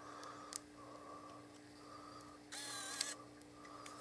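A Nikon Coolpix S5200 compact camera's mechanism whirring briefly, for about half a second starting a little past the middle, ending in a click. A fainter click comes about half a second in, over a steady low hum.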